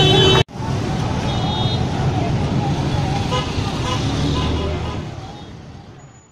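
Busy street noise of traffic and a crowd of voices, with a short high horn toot about a second in. It starts after a sudden cut from loud chanting voices and fades out near the end.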